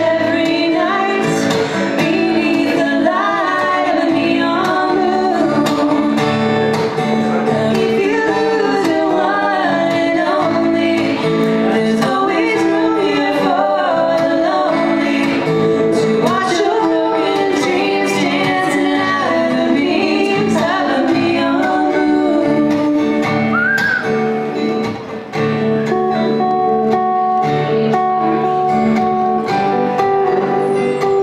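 Live country song: two women's voices singing over a strummed acoustic guitar and an electric guitar. The singing stops about five seconds before the end, and the two guitars play on alone.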